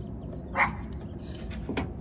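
A dog barking, with one loud short bark about half a second in.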